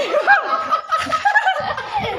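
Several men and boys laughing and chuckling at once, in short, broken bursts.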